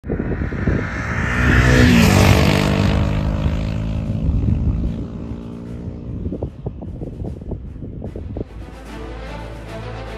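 An engine going by, loudest about two seconds in and fading after, with music under it; near the end the music carries on alone.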